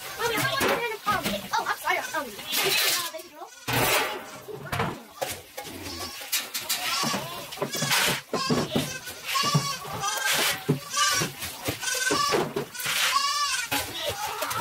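Goats bleating over and over in wavering, quavering calls. The scrape and clank of a metal scoop in a metal feed bin and the rustle of poured grain feed come through at times.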